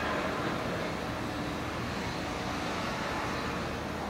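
Steady outdoor rumble with a faint engine hum running through it, no single event standing out.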